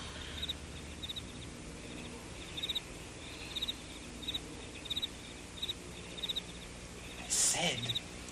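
A cricket chirping steadily, with short high chirps about every two-thirds of a second. Near the end comes a louder breathy vocal sound from a person.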